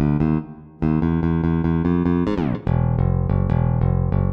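An electric bass guitar playing alone. It plays a few separate notes, then a run of even repeated eighth notes, then a slide down in pitch about two and a half seconds in. After that it starts a new phrase in a dotted rhythm on low notes.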